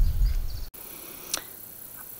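Low rumble of wind buffeting an outdoor microphone, cut off abruptly less than a second in, leaving faint background hiss with one brief click about a second later.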